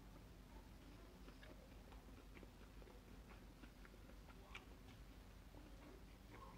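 Near silence with faint, scattered soft clicks of a person chewing a mouthful of jackfruit vegan crab cake.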